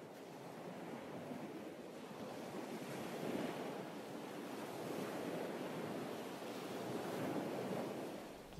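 Small waves washing onto a sand and pebble shore: a steady wash of surf that swells gently about three seconds in and again near the end.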